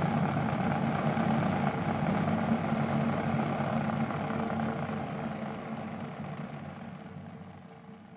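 A large arena crowd getting to its feet, a broad rumble of movement and murmur that dies away over the last few seconds.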